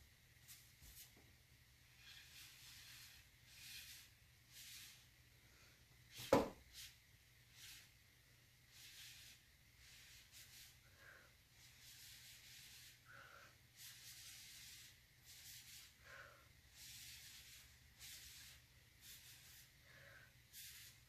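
A stick dragged and scraped through wet acrylic paint on a panel: a series of faint, irregularly spaced scraping strokes. One short knock about six seconds in.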